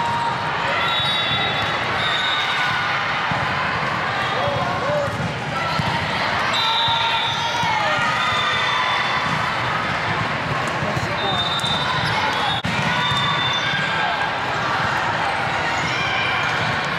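Indoor volleyball rally in a large, reverberant sports hall: the volleyball being hit and bouncing, players' shoes squeaking on the court, and voices calling and chattering around the courts. There is one sharp smack about twelve and a half seconds in.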